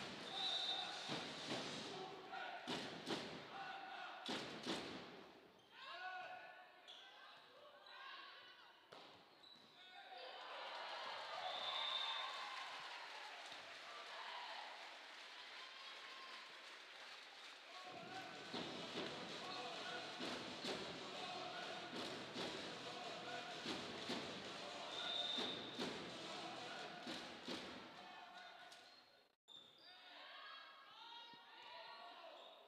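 Volleyball being played in a large sports hall: the ball is struck repeatedly in sharp slaps and thuds, with players calling out and voices in the hall between hits.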